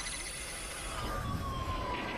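Electronic outro sting: a synthesized sound-effect bed with a low rumble and a high steady tone, and a tone gliding slowly downward in the second half.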